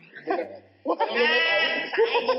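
A person's voice making a long, drawn-out wavering vocal sound without words, starting about a second in, over soft background music.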